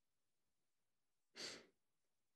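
One short breath into the microphone, about one and a half seconds in; otherwise near silence.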